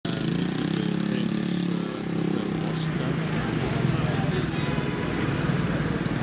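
City street sound: a motor vehicle engine running close by, with people's voices in the background.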